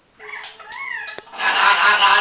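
Green-winged macaw vocalising in a light, sing-song voice: a soft short phrase that rises and falls in pitch, then from about a second and a half in a louder, held, tuneful call.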